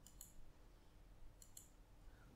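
Faint computer mouse clicks over near silence: one quick pair of ticks at the start and another about a second and a half in.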